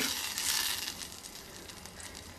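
Buttery chilli-ketchup sauce sizzling in a stainless steel saucepan on a gas flame while a silicone spatula stirs it: a fine crackle that fades as the stirring stops.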